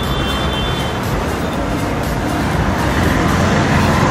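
Road traffic on a busy city street: motorbikes and cars passing close by in a steady rumble that grows louder near the end.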